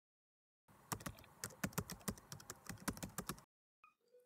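A quick, uneven run of light clicks and taps, starting about a second in and stopping about half a second before the end.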